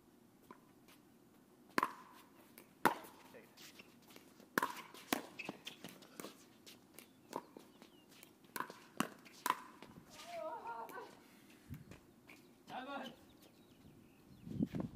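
Pickleball rally: paddles striking the plastic ball, a run of about ten sharp pops that starts about two seconds in and ends before ten seconds in, the hits coming quicker towards the end.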